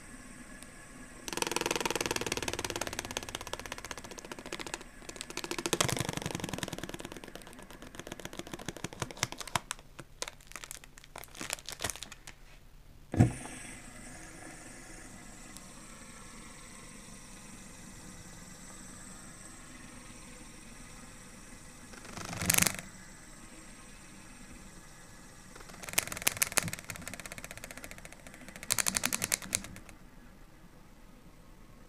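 Fidget spinner spun on a glass tabletop with a fingertip: runs of fast, rattling clicks as the finger touches the spinning arms, one sharp click about 13 seconds in, and a faint steady whir while it spins freely. Louder rustling handling noise fills the first few seconds.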